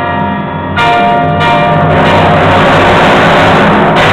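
Timpani and grand piano playing together in a live concert performance. Ringing held notes sound over a deep sustained drum tone, with a fresh stroke about three-quarters of a second in.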